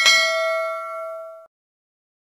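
Notification-bell sound effect from a subscribe animation: one bright ding that rings for about a second and a half, then cuts off suddenly.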